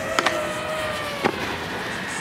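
Steady motor whine of a following camera drone, with overtones, its pitch sagging slightly and then holding, over a faint hiss. Two short sharp clicks stand out, one just after the start and a louder one a little past a second in.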